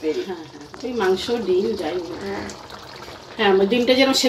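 A person's voice talking, with a short quieter pause a little before the end.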